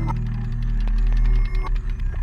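A steady low hum with irregular mechanical clicks and ticks over it. The hum turns choppy about one and a half seconds in.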